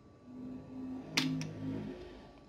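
A single sharp click a little past a second in, over a faint low hum that comes in short stretches.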